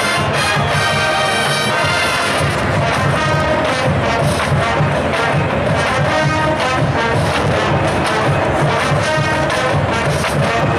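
College marching band playing a brass-heavy jazz tune, the horns full and loud over a steady drum beat.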